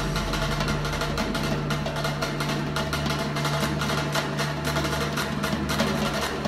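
Caucasian double-headed hand drum played by hand in a fast, continuous roll of quick, even strokes. A steady low hum runs underneath.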